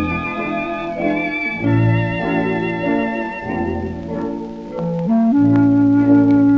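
Instrumental break of a 1933 dance-orchestra slow-foxtrot record played from a 78 rpm disc: the band plays held chords that change every second or so, stepping up to a higher sustained note about five seconds in. A few faint clicks of the record surface come near the end.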